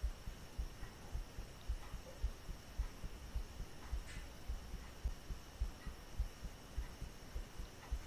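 Quiet microphone noise with no speech: a faint steady high whine and hiss, with soft low thumps repeating a little under twice a second.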